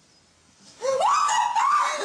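Sudden loud, high-pitched screaming that breaks out just under a second in, in two long cries, from a person startled awake in a scare prank.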